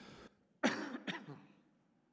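A man coughing twice, a sharp cough about half a second in and a shorter one just after it.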